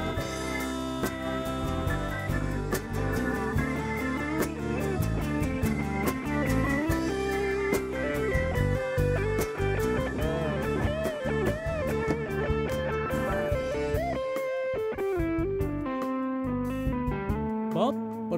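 Live band music led by guitars, electric and acoustic, over keyboard and bass, with gliding lead-guitar lines and sharp drum hits throughout. The bass drops out for a moment about fourteen seconds in.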